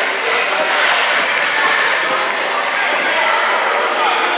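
Echoing gym din of a basketball game: many voices overlapping with no clear words, and a basketball bouncing on the court now and then.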